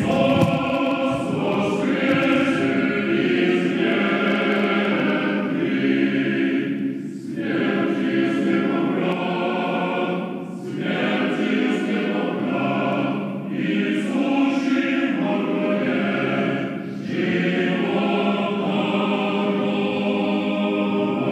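Russian Orthodox church choir singing the chant of a thanksgiving moleben, unaccompanied, in long sustained phrases broken by short pauses every few seconds.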